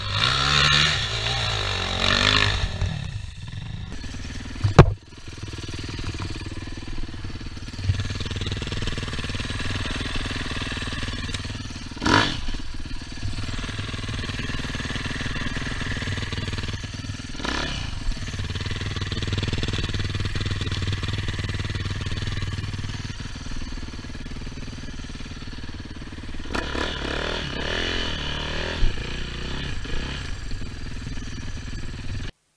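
Enduro dirt bike engines: one revs hard for the first few seconds as a bike climbs a leafy slope with its rear wheel spinning. Then an engine runs steadily at low revs, broken by a few sharp knocks, and revs up again near the end as the bike moves off.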